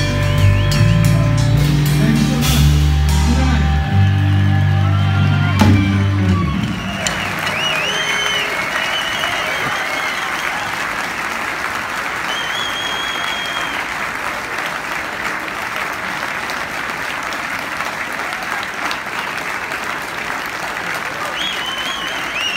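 A live rock trio of electric bass, guitar and drum kit plays its closing bars, ending on cymbal crashes about six seconds in. A large crowd then applauds steadily, with whistles on top.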